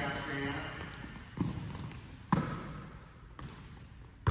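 A basketball bouncing on a hardwood gym floor: three sharp thuds about a second apart, with short high sneaker squeaks between them as players cut.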